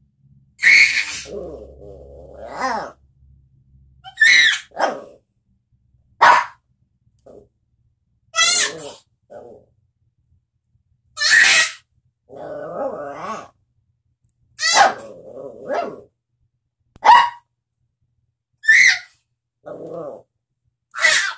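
A small puppy yapping and grumbling in short bursts with pauses between, taking turns with a baby's babbling calls.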